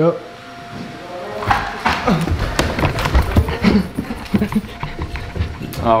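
Footsteps climbing a carpeted staircase: a quick, uneven run of thumps and knocks with handheld-camera handling noise. It starts about a second and a half in and stops just before the end.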